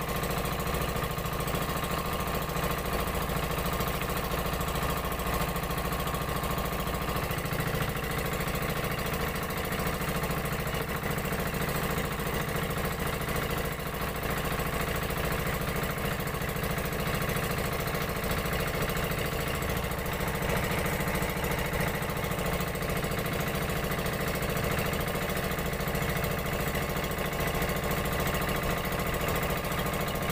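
Outrigger fishing boat's engine running steadily at a constant speed.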